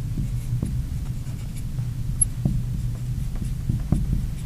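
Marker writing on a glass lightboard: short light taps and strokes of the tip, over a steady low hum.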